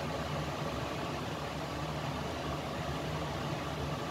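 Steady low mechanical hum with a faint hiss, unchanging throughout, like a motor or fan running.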